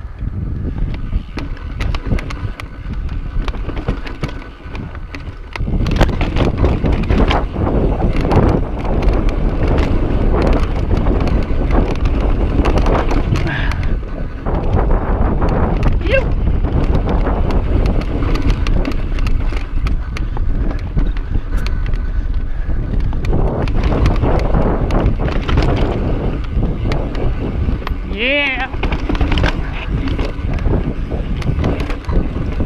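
Mountain bike riding over rough rock and dirt singletrack, heard from a chest-mounted camera. Wind buffets the microphone over the rattle and clatter of the bike and tyres on rock. It gets louder about five seconds in as the pace picks up, and near the end there is a brief wavering high-pitched squeal.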